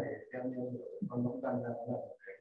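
A person talking over a video-call link, in short phrases with brief breaks.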